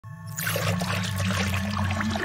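Animated-intro sound design: a liquid pouring and swirling sound effect over a low, steady musical drone, starting about half a second in.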